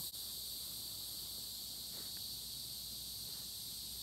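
A steady, high-pitched chorus of insects, unchanging throughout, with one faint click right at the start.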